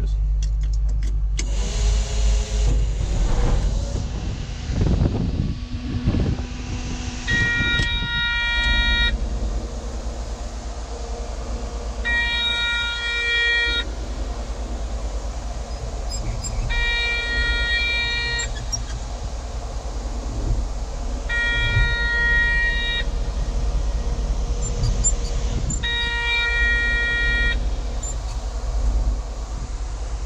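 Caterpillar 140H motor grader's diesel engine starting about a second and a half in, then running. A multi-tone warning beep from the machine sounds for about a second and a half, repeating roughly every four to five seconds.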